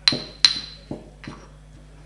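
Ceramic pestle knocking against a ceramic mortar while grinding biscuit mixed with water: two sharp clinks with a brief ring in the first half second, then a few fainter taps.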